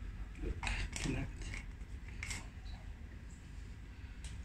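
Small plastic and rubber parts being handled: a few short scrapes and clicks as an enema bulb's connector, fitted with its anti-backflow plug, is fitted onto the rubber bulb.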